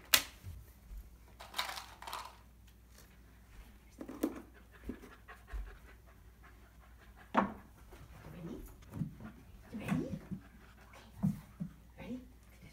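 Airedale terrier puppy panting, with scattered knocks of paws and plastic as it steps on and off an upturned plastic stool and bucket; the loudest, a sharp knock, comes right at the start, and another about seven seconds in.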